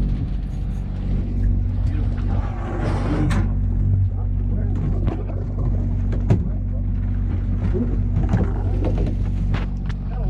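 A sportfishing boat's diesel engines running with a steady low drone, with water splashing and a few sharp knocks, the loudest about six seconds in, as a hooked tuna thrashes alongside the boat.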